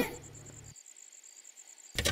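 Faint, steady cricket chirping over a quiet cartoon soundtrack, a stock 'silence' gag. A low hum underneath cuts out under a second in, and a sudden loud sound starts right at the end.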